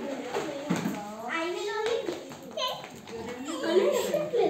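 Children's voices: several kids talking and calling out indistinctly while they play.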